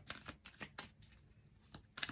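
A tarot deck being shuffled by hand: quick, irregular soft clicks and slaps of the cards against each other, several in the first second, thinning out in the middle, then picking up again near the end.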